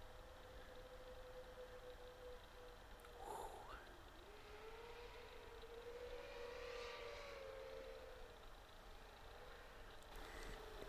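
Near silence: room tone with a faint steady hum that wavers and rises slightly in pitch through the middle.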